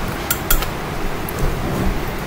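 A couple of light clicks in the first second as scissors are handled and set down on the tabletop, over a steady background hiss.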